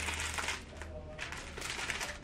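Foil wrapper around a slab of dark chocolate crinkling as it is drawn out of its cardboard box, in a run of short crackles.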